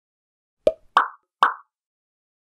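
Three short cartoon pop sound effects of an animated logo intro, about half a second apart, the first lower in pitch than the other two.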